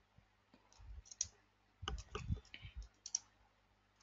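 Faint computer keyboard typing: irregular key clicks in a few short clusters, about a second apart.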